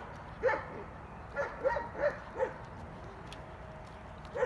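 German shepherd puppies, eight weeks old, yipping: about five short high calls in quick succession in the first half, then quiet.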